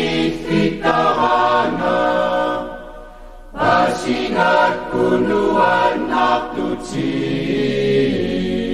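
A choir singing, with held notes and a brief break about three seconds in.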